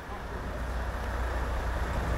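Steady low engine rumble of idling vehicles with street traffic noise, slowly growing louder.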